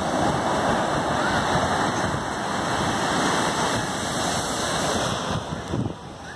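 Ocean surf: waves breaking and washing up the beach in a steady rush of water. It thins out in about the last second.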